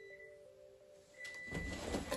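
Faint room tone, then about one and a half seconds in, rustling and handling noise as a person shifts and leans close to the microphone.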